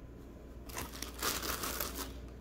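Thin plastic bag of toy stuffing crinkling as a hand reaches in to pull out more, starting a little under a second in and lasting about a second.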